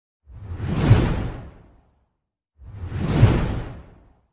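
Two whoosh transition sound effects, each swelling up and fading away over about a second and a half; the second one starts about two and a half seconds in.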